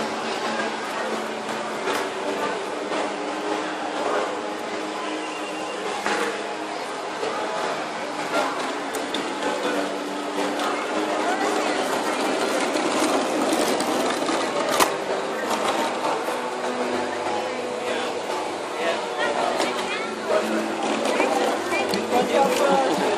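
Indistinct crowd voices with a small electric motor whirring: the 12-volt drive motors of a home-built R2-D2 replica droid, along with scattered clicks.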